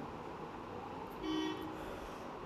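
Low room tone with one faint, short, steady horn toot about a second in, from a distant vehicle horn.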